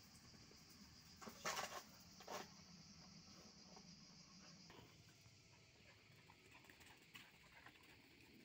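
Mostly near silence with a faint steady high hiss. A little over a second in come a few brief scuffing rustles on dry leaves and dirt, then one more shortly after, with faint scattered ticks later on.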